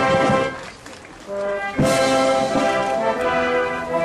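Brass band playing held chords; the music drops away briefly about a second in, then returns loudly on a sharp accent.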